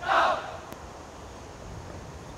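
A squad of cadets shouting once in unison, a short drill shout right at the start, followed by a steady outdoor background.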